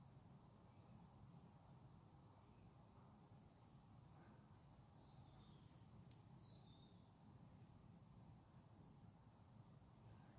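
Near silence: quiet room tone with faint, high bird chirps now and then, and one soft click about six seconds in.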